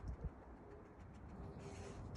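A dove cooing faintly: a soft, low, drawn-out note that starts about half a second in.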